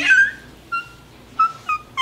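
A baby squealing: several short, high-pitched squeals spaced through the two seconds.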